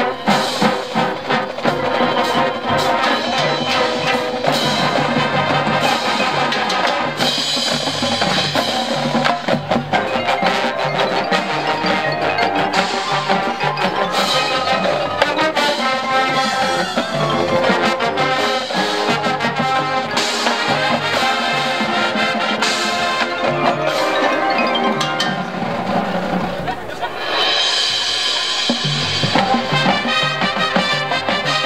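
Marching band playing a field show, with the front ensemble's marimbas and xylophones prominent alongside brass and drums. The music dips briefly a few seconds before the end, then swells louder.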